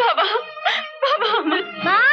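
A woman wailing and crying out in distress, with a sharp rising cry near the end. A held musical note sounds underneath.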